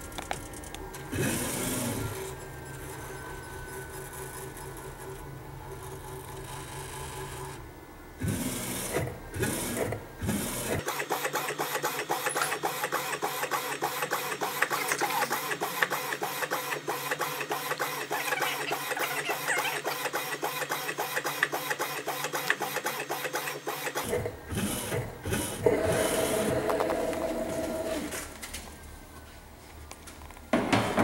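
AnaJet mPower direct-to-garment inkjet printer printing a T-shirt. A steady motor hum runs for the first several seconds. From about eleven seconds in, the print head carriage shuttles back and forth over the shirt in a fast, even rattle for about thirteen seconds, followed by a few seconds of a steady mechanical tone.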